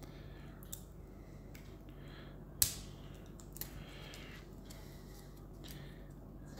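Faint handling sounds of cylindrical lithium-ion battery cells and their plastic wrap: light rustles and a few small clicks, the sharpest about two and a half seconds in.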